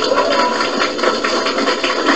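Audience applause: many hands clapping in a dense, irregular patter.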